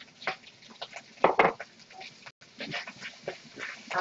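Scattered clicks and knocks of kitchen utensils: long chopsticks against a wok and a plastic container being handled. The loudest knock comes about one and a half seconds in.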